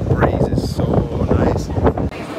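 Low rumble and wind buffeting the microphone on an underground metro platform, with indistinct voices over it.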